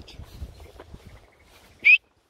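Faint outdoor background, then near the end a single short, loud, high whistled note that rises in pitch.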